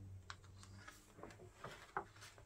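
A page of a hardcover picture book being turned by hand: faint scattered ticks and papery taps, the sharpest one near the end as the page comes down.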